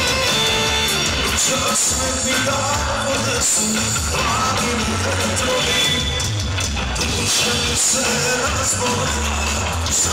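Live band playing Serbian pop-folk music with singing over a steady bass line.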